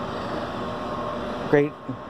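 A steady rushing background noise with a faint hum, easing slightly near the end as a man's voice comes in.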